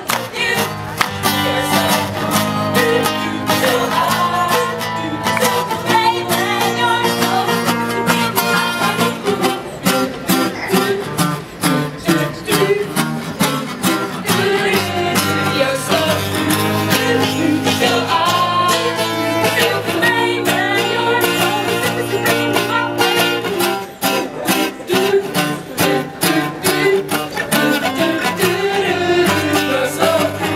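Acoustic guitar strummed in a steady rhythm, accompanying a group of young women singing together.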